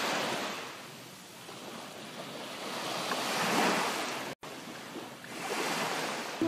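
Sea surf breaking on the beach, a steady wash of noise that swells and fades, with a momentary cut-out a little past four seconds.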